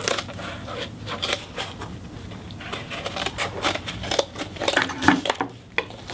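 Scissors snipping through cardboard in a run of short cuts, with cardboard being handled on a wooden table.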